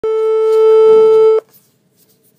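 A single steady telephone tone, about a second and a half long, that cuts off sharply.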